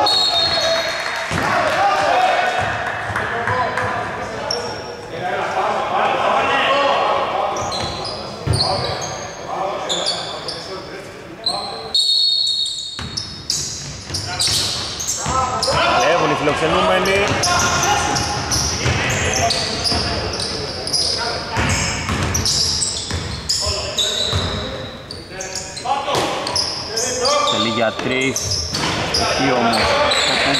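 Indoor basketball game sounds echoing through a large hall: the ball bouncing on the hardwood court amid players' voices calling out on the floor.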